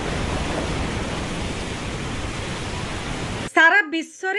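Steady hiss of rain, a storm sound effect, slowly fading and then cutting off abruptly near the end, where speech begins.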